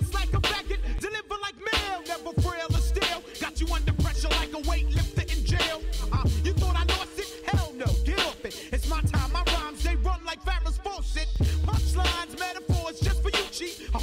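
A hip-hop track: rapping over a beat of deep bass notes, regular drum hits and sustained sampled tones.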